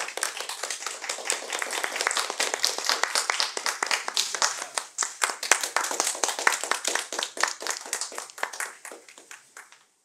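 Audience applauding: many people clapping densely and steadily, the clapping thinning and fading away over the last two seconds.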